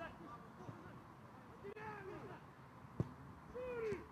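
Faint pitch-side sound of a football match: players' distant shouts and calls, with one sharp thud about three seconds in, a ball being kicked.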